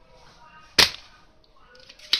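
Spring-loaded desoldering pump (solder sucker) firing once, about a second in: a single sharp snap as its plunger shoots back to suck molten solder off a circuit-board joint heated by a soldering iron.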